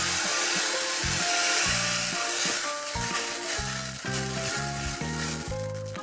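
Tiny beads pouring out of a squeezed, cut-open squishy stretchy toy into a plastic bin, a dense hiss that thins out as the stream lessens. Background music plays under it.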